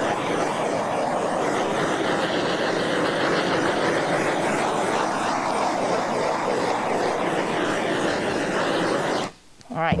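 Heat gun blowing steadily over a freshly coated epoxy surface, warming the wet epoxy and pigment so the colour will move. It cuts off about nine seconds in.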